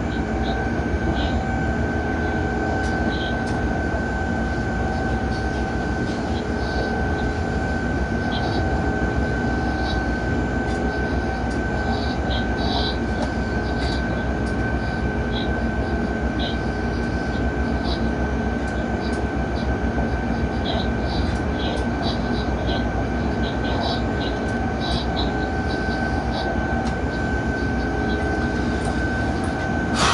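Electric freight locomotive running at a steady speed, heard from inside the driver's cab: continuous running noise with a constant high whine that holds one pitch, and scattered short high clicks and squeaks from the wheels and track.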